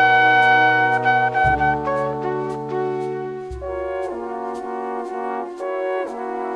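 Jazz big band playing a slow ballad: a solo trumpet over sustained brass chords. The trumpet holds a long high note for the first second and a half, the low notes change every two seconds or so, and light regular ticks keep time throughout.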